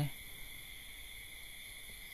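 Pause in a man's speech, filled by a faint, steady high-pitched hiss or whine in the background, with no rhythm or breaks. The tail of a spoken syllable ends just at the start.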